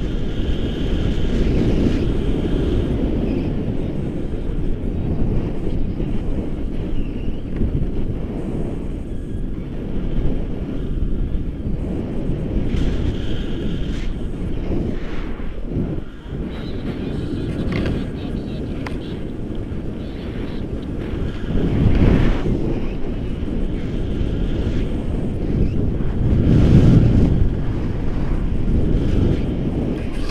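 Wind rushing over a handheld camera's microphone in tandem paraglider flight, a steady low rumble that swells in two stronger gusts in the last third.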